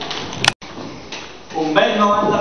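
A single sharp click with a brief drop-out about half a second in, then low room noise, and a person's voice begins near the end.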